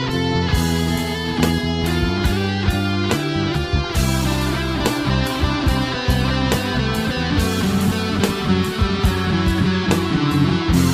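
Instrumental progressive rock passage: electric guitar over bass and drums, with a steady beat.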